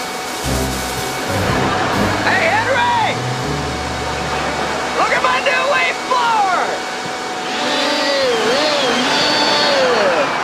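Cordless, battery-powered leaf blower running with a steady blowing rush, under sitcom music with a deep bass line.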